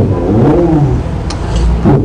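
A man's drawn-out exclamation 'โอ้โห' ('wow'), its pitch sliding up and down for about a second, then fading into scraps of talk, over a steady low hum.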